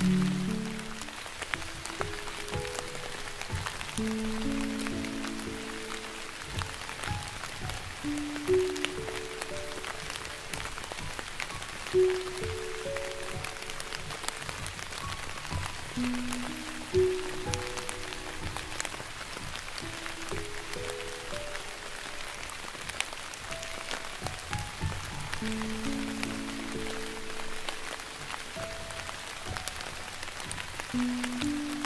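Slow, soft piano music, one or two sustained notes at a time in a low-to-middle register, over a steady sound of light rain falling.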